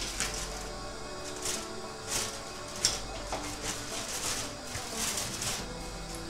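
Aluminium foil crinkling in short, irregular bursts as it is peeled back from the rim of a steamer pot, over soft background music.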